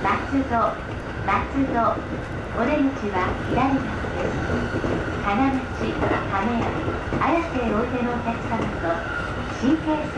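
Recorded onboard train announcement in Japanese, naming the next stop and the connecting lines. It plays over the steady running noise of an E531-series commuter train on the rails.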